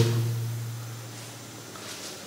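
Pause in speech: a steady low electrical hum under faint room tone.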